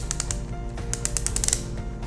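Dose-selector button of an Ovitrelle prefilled injection pen turned by hand, giving a rapid series of small ratchet clicks as the dose is dialled up. Background music runs underneath.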